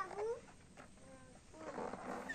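Children's high-pitched voices: a sliding cry at the start, a quieter stretch, then several voices calling out again near the end.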